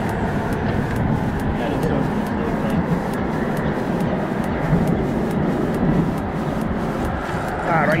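Steady rumble of road traffic on the highway bridge overhead, loud and continuous, with a man's voice starting just at the end.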